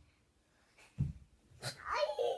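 Two dull thumps, then near the end a short, bending vocal sound from a toddler.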